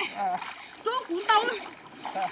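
Splashing and sloshing of muddy water as people wade and grope through a shallow pond, under three short, high-pitched vocal exclamations from a woman in the first second and a half.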